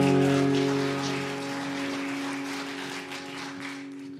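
A worship band's final chord, with guitar, ringing on and slowly fading away, over a soft crackling patter.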